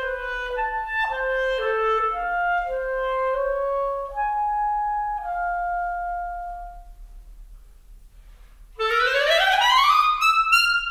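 Clarinet playing a slow melodic line of held notes, the last note fading away about seven seconds in. After a short pause it breaks into a loud, fast upward run into the high register near the end.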